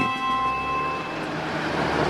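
Steady low rumble of a tank's engine and running gear, rising as background music fades out in the first second.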